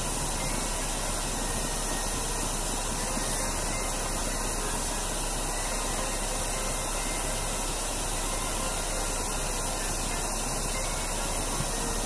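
Steady rushing hiss of a Dyson fan blowing at its strongest setting onto a lit SOTO G-Stove gas burner, the air noise mixed with the burner's flame hiss; it holds even throughout.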